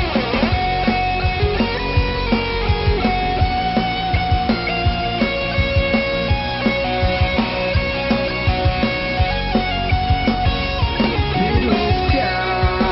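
Rock band instrumental passage: distorted electric guitars play a held melodic line over a steady drum beat.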